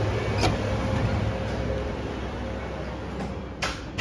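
A door opened by its metal lever handle, with a click about half a second in and a sharper click just before the end, over a steady low hum.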